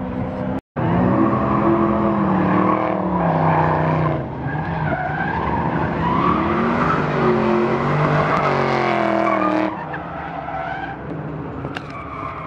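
Drift cars on the track, engines revving up and down through their slides with tyres squealing. The sound starts abruptly about a second in and falls away about two seconds before the end.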